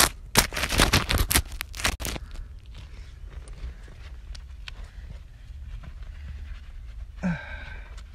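Rapid crunching, knocking and handling noise for about two seconds as a phone is moved about in a dirt and debris bank, then a quieter low steady rumble with a few faint ticks.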